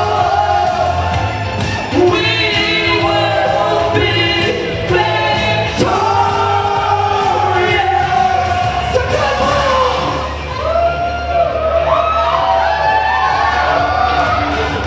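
A man and a woman singing a song live over a recorded backing track with a steady beat. In the last few seconds the voices turn to sliding whoops and yells.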